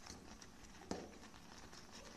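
Faint clicks of a wire whisk against the sides of a stainless steel pot as a milk-and-starch pastry cream is stirred on the stove, with one sharper tap about a second in.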